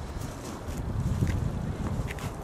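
Wind buffeting the microphone: an uneven low rumble that swells about a second in, with a few faint ticks.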